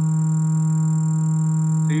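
Loudspeaker playing a steady low tone of about 158 Hz, with faint overtones, as it drives a rubber membrane stretched over a PVC pipe into a resonant vibration pattern.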